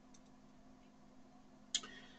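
Quiet room tone with a faint steady hum, broken by one short, sharp click near the end.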